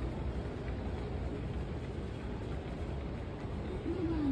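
Steady low rumble of a large airport terminal hall, the hum of its air handling and distant activity, with no distinct events.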